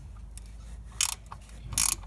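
Ratcheting spanner clicking as it is swung back while loosening a 12 mm bolt, two short bursts of clicks, one about a second in and one near the end.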